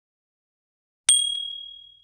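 A single bright, high ding sound effect about a second in, ringing on and fading away over about a second: the notification-bell chime of a subscribe-button animation.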